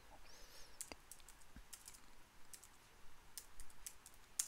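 Faint, irregular clicks of computer keys being typed.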